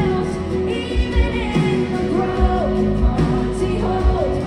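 Live pop worship band playing a song, with vocals over drums and acoustic guitar and a regular kick-drum beat.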